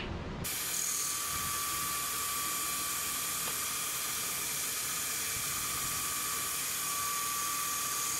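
Belt grinder with a cork belt running while a steel knife blade is held against it on the contact wheel to refine a concave grind. It makes a steady hiss with a thin high whine that starts abruptly about half a second in.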